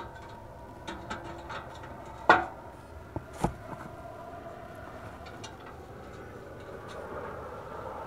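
A few sharp clicks and knocks. The loudest comes a little over two seconds in, and another follows about a second later. Under them runs a steady faint hum.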